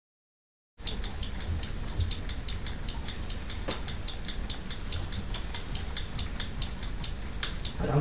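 Rain pattering on a window, many small irregular ticks over a low steady rumble, starting about a second in.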